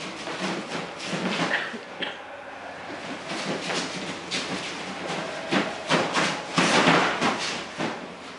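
Feet scuffing and shuffling and bodies scraping on a mat covered with plastic sheeting as two people grapple. Near the end there is a louder scraping rush lasting about a second as one is taken down onto the mat.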